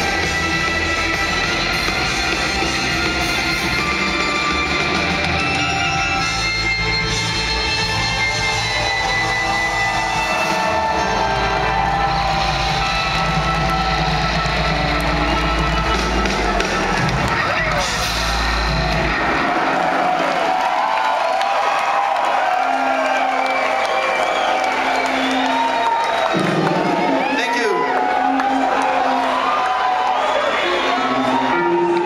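A live band with electric guitar, drums and heavy bass, heard loud from within the audience. The band stops about two-thirds of the way in, and the crowd cheers, whoops and whistles over a few held notes from the stage.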